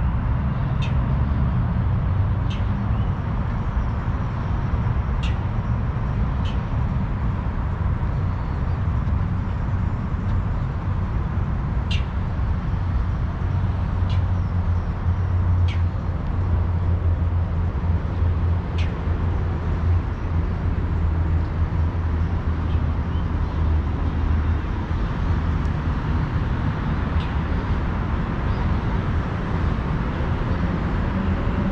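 Steady low rumble of distant road traffic, with a few faint, scattered ticks.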